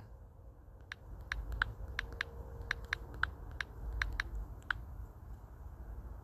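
Typing on a smartphone's touchscreen keyboard: a run of about fifteen short key clicks at an uneven pace, starting about a second in and stopping near the five-second mark.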